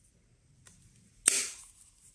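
Clear plastic hinged lid of a Freewell drone ND filter case snapping shut: a faint click, then one sharp loud snap about a second and a quarter in.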